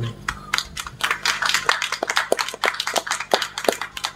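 Audience applauding, with separate, uneven claps.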